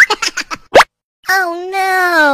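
A quick run of short, rising "plop" sound effects, then a brief silence. After that comes a child's voice in one long, slowly falling "ooh".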